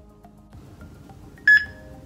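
HeartSine Samaritan 360P defibrillator powering on: one short, loud, high-pitched electronic beep about one and a half seconds in.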